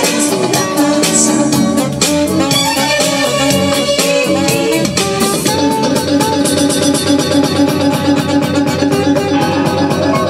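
Dance-band music with guitar, drums and a saxophone. About halfway through, the playing settles into a fast, even strummed rhythm.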